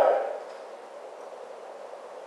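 A man's voice finishing a word, then a pause in his speech with only faint steady hiss.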